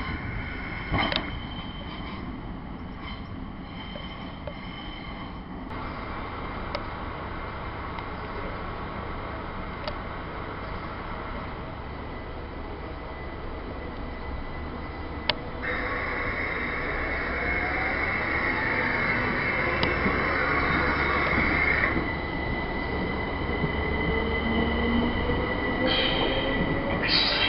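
Electric multiple-unit train running alongside a station platform: a high, steady squeal from the wheels and brakes sets in sharply about halfway through and stops a few seconds later, while a motor whine slowly rises in pitch through the last part as the train gets louder.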